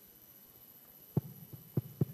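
Three dull thumps over a faint steady hum: the first a little over a second in, the next two about half a second apart.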